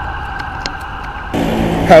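Steady outdoor street background noise with a faint steady tone and a few light clicks. About a second and a half in it switches abruptly to a different steady background at a cut.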